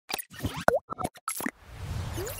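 Cartoon-style sound effects for an animated logo: a quick run of short pops and clicks, one of them a springy pitch that dips and rises again, then a faint whoosh building near the end.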